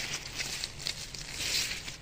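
Broad bean leaves and stems rustling as they are brushed close to the microphone: an irregular, crackly hiss that swells about one and a half seconds in.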